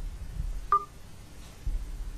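Kindle Fire tablet's volume-sample beep from its speaker: one short tone about two-thirds of a second in, played as the volume slider is raised to preview the new volume level.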